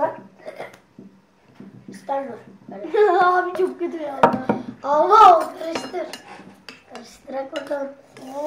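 Kitchenware clatter: a plastic food-chopper container and a metal spoon knocking and clinking against a ceramic bowl and the table, with a sharp knock at the very start. From about two seconds in, children's voices rise over it and are loudest around the middle.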